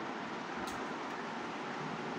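Steady, even background hiss with no speech, and a faint click about two-thirds of a second in.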